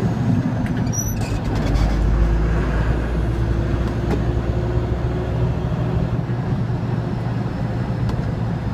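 Straight truck's engine running under way, heard from inside the cab as a steady low drone over road rumble.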